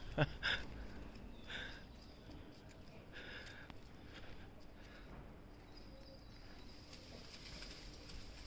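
Quiet outdoor ambience with a few faint, short bird calls. Two brief bursts of a person's laughter come just after the start.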